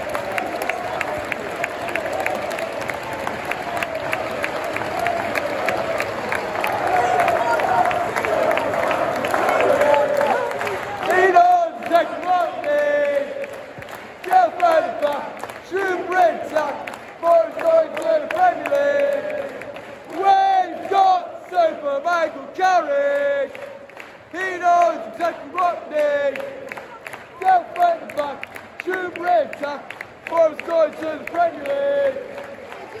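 Football crowd singing a chant and clapping along. For about the first ten seconds it is a dense wash of voices and applause; after that the chant comes through as short sung phrases, repeated over and over with claps in time.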